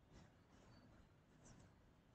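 Near silence: faint room tone with a few soft, brief scratchy sounds.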